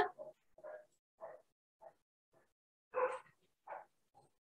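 Faint short animal calls repeating about every half second, with a louder one about three seconds in.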